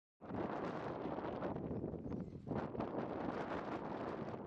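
Wind buffeting the microphone over the turning-over of a two-wheel walking tractor's engine being hand-cranked, starting abruptly a moment in as the sound cuts in.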